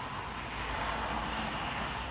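Steady rushing vehicle noise, a little louder from about half a second in.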